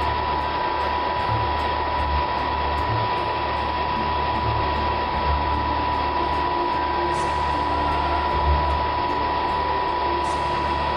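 Miniature wind tunnel fan running at steady speed: one steady whine over the rush of moving air, with faint irregular ticking.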